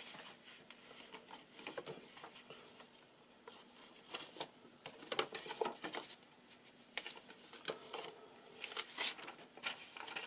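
Loose sheets of paper and folded paper mailers rustling and sliding against each other as they are handled and stacked by hand, in short, irregular rustles that come thickest a little after the middle and near the end.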